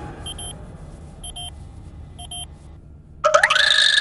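Patient monitor beeping: a short double beep about once a second, three times, over a low hum. Near the end a louder pitched sound rises, holds and falls away.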